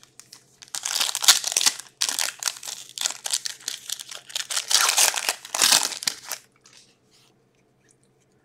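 Foil wrapper of a Skybox Metal Universe hockey card pack being torn open and crinkled by hand, in a run of rustles that stops about six and a half seconds in.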